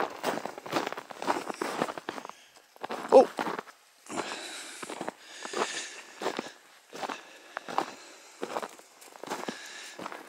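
Footsteps in snow, a steady run of about two steps a second.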